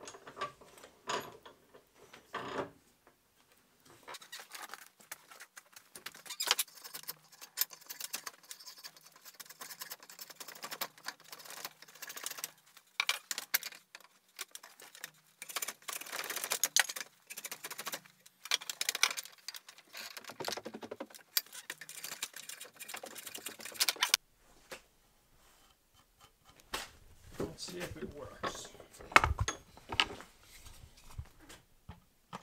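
A drawknife shaving down the end of a wooden stick held in a bench vise: a long run of irregular scraping strokes that begins about four seconds in and stops suddenly some six seconds before the end.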